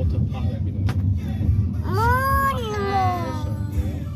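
Low steady rumble of a car driving, heard from inside. About halfway a long, high drawn-out voice sounds, rising then falling.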